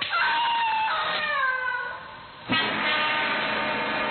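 A woman screaming, her cry falling in pitch over about two seconds, as she is attacked with a jack handle. About two and a half seconds in, a loud sustained musical chord cuts in and holds.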